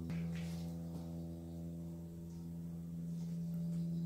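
A steady low hum made of several held tones that do not change in pitch or level.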